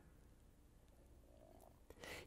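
Near silence: faint room tone with a small click near the end.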